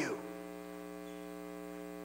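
Steady electrical mains hum, a buzz with a stack of even overtones, unchanging in pitch and level.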